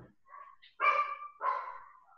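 A dog barking twice in quick succession, two short high-pitched barks about half a second apart.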